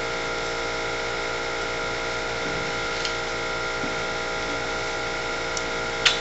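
A steady hum made of several fixed tones at an even level, with a faint click about three seconds in.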